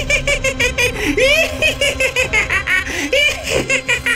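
A cartoon ghost laughing: a loud, unbroken run of quick 'ha-ha' pulses, several a second, the pitch rising and falling.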